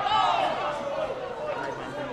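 A single loud shout that starts suddenly and falls in pitch over about a second, with other voices in the hall chattering around it.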